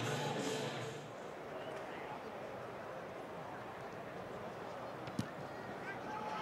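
Faint, steady open-air stadium ambience from a rugby match broadcast, an even wash of background noise, with one sharp knock about five seconds in.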